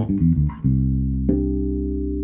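Ibanez SRMD200 medium-scale (32-inch) electric bass played fingerstyle through an amp, with its EQ set flat and only the low band turned up slightly. A few quick notes come first, then a low note is held, and a second note joins it about 1.3 seconds in, both left ringing.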